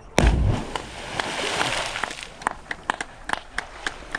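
A person plunging feet-first into deep water: one sharp, heavy splash about a quarter second in, then spray showering back onto the surface and fading over about two seconds, followed by scattered drips and plops.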